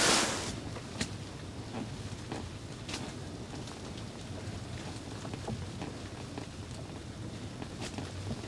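Quiet, steady low background noise with a few faint, light clicks scattered through it.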